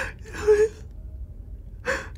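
A person's short, breathy, sobbing gasp about half a second in, in a crying act, followed by quiet room tone.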